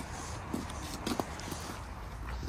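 Footsteps on a paved path: a few soft, irregular taps over a low steady rumble.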